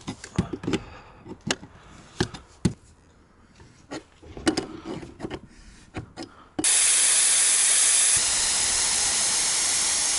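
Scattered metal clicks and taps of a wrench working the fittings of a radiant-heat manifold. About two-thirds of the way in, a loud steady hiss starts suddenly: compressed air rushing in through a gauge fitting to pressurise the radiant-floor tubing for a pressure test.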